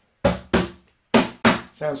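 Slap strokes on a Spanish J Leiva cajon: four bare-hand strikes in two quick pairs near the top corners of the wooden front panel. Each is a sharp, higher-pitched crack that dies away fast.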